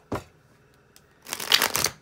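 A deck of tarot cards shuffled by hand: a brief tap just after the start, then a loud, crackling riffle of about half a second near the end.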